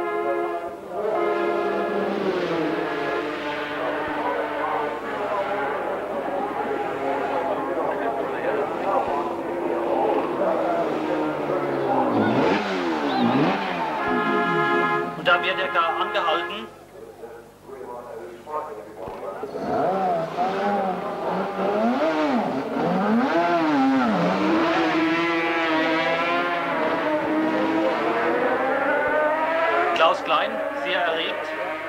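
Racing motorcycle engines revving in the pit lane, their pitch rising and falling several times, with voices in the background.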